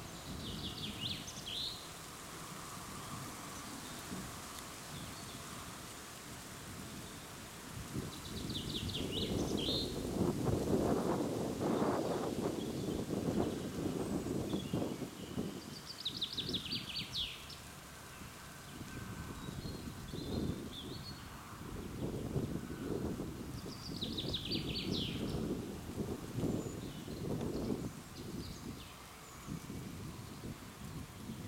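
A songbird sings a short phrase of rapid notes four times, about every eight seconds, over wind rumbling on the microphone that swells around ten to fifteen seconds in.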